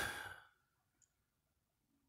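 A man's short sigh close to the microphone, fading within half a second, then near silence.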